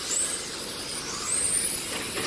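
Radio-controlled touring cars running on the track, their motors giving a high whine. One whine falls in pitch at the start, and another rises steadily in the second half as a car speeds up.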